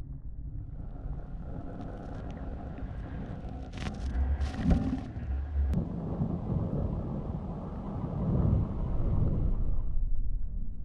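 Wind rushing over a moving camera's microphone as it follows a snowboarder through deep powder, a steady low rumble mixed with the hiss of the board and sprayed snow. It grows louder in the second half, with a couple of brief sharper hisses of snow spray around the middle.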